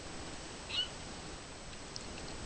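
Steady hiss and patter of a lawn sprinkler's spray falling on water and grass, with one brief high-pitched chirp a little under a second in.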